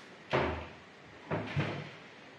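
Glass-fronted kitchen cabinet door being pulled open: a sharp clack about a third of a second in, then two softer knocks about a second later.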